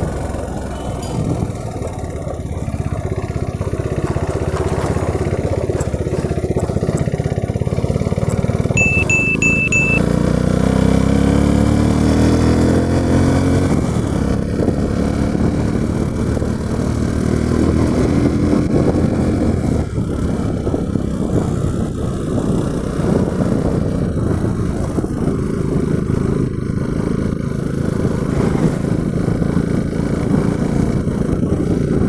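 Motorcycle engine running under way as it is ridden, its pitch rising in sweeps with throttle and gear changes. About nine seconds in there are four short high beeps.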